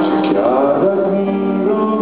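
Live band music: a man singing a melodic line into a microphone over sustained keyboard and guitar chords.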